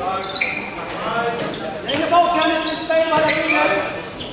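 Handball being bounced on a sports-hall floor amid players' shouts and calls, echoing in the hall.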